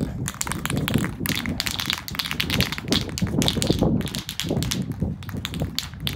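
An aerosol spray paint can being shaken hard, the mixing ball rattling rapidly inside to mix the paint before spraying.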